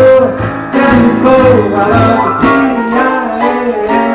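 Live piano and male voice performing a song: piano chords and runs under long held sung notes.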